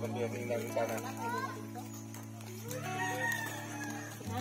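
A rooster crowing: short rising calls near the start, then one longer call that rises and holds about three seconds in, over background music with steady low notes.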